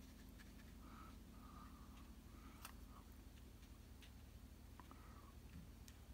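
Near silence: a few faint, soft brush strokes on wet watercolour paper over a low steady hum, with a couple of light ticks.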